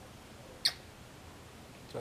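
A single short kissing smack on a child's forehead, about two-thirds of a second in, against quiet room tone.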